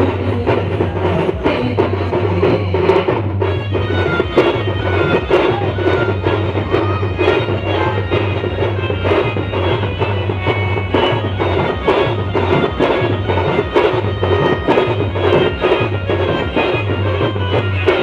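Adivasi band music from a Roland XPS-30 keyboard: a sustained lead melody over a steady drum beat, played loud through the stage speakers.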